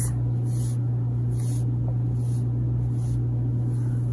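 A steady low hum, with a few faint soft swishes as wool-blend yarn is drawn with a tapestry needle through the stitches of a crochet square.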